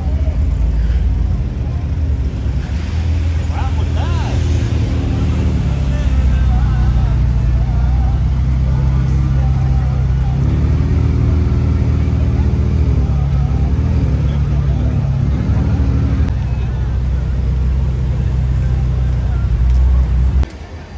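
Ferrari F8 Spider's twin-turbo V8 running at low revs as the car rolls slowly away, a loud, steady deep drone with slight rises and dips in pitch. Voices of onlookers are heard over it.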